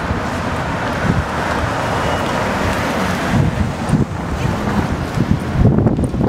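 Street traffic passing, with wind rumbling on the microphone. The traffic noise is strongest over the first three seconds, then eases.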